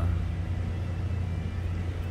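A steady low mechanical hum with no change and no sudden sounds.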